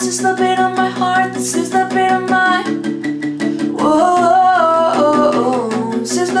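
Acoustic guitar strummed in a steady rhythm, accompanying a solo voice singing a melodic line that comes in near the start and again about two-thirds of the way through.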